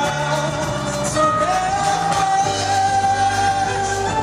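Live band performing a song. A male vocalist rises to a long held note about a second in and sustains it, over acoustic guitar and bass guitar.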